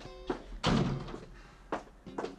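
Background music, with a door shutting with a thud a little over half a second in.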